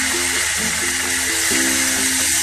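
Light background music of short plucked-string notes, over a steady sizzle of chopped tomatoes frying in hot oil.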